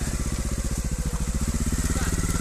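Trials motorcycle's single-cylinder engine running at low, steady revs with an even, rapid firing pulse.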